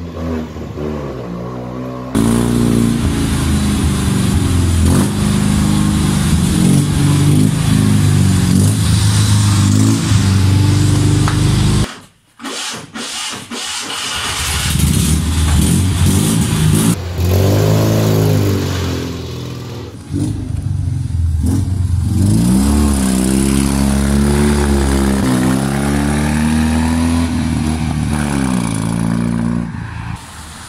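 Fiat 126's small air-cooled two-cylinder 650cc engine running and revving, its pitch rising and falling several times, in stretches broken by abrupt edits with a short near-silent dip about halfway.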